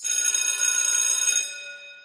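An electric school bell ringing: a steady ring of many high tones with a fast flutter, fading away over the last half second.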